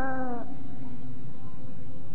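A male Quran reciter holds a long melodic note that bends downward and ends about half a second in, followed by a steady, noisy background of the recording hall with no clear voice.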